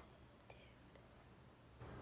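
Near silence: quiet room tone with a single faint click about half a second in.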